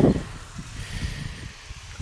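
Wind noise on the microphone over a low rumble of road and tyre noise from riding a bicycle.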